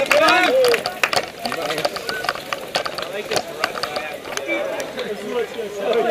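Several people talking at once, one voice close by in the first second and others weaker after it, with scattered sharp clicks throughout.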